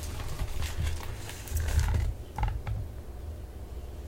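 Soft knocks, clicks and rustles of a hardcover picture book being handled and lifted off its wooden book stand, over a low rumble.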